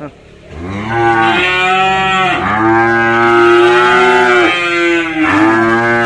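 Young calves, about six months old and still of suckling age, mooing: three long, loud moos one after another, the middle one the longest.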